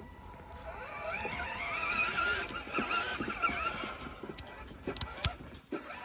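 A vehicle going by, its sound swelling and fading over the first few seconds, then a few sharp clicks as the USB power plug is handled against the dash camera.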